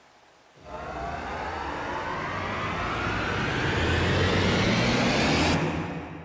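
A sound effect rising steadily in pitch over a low rumble, building and getting louder for about five seconds; its high part cuts off suddenly near the end and the rumble fades.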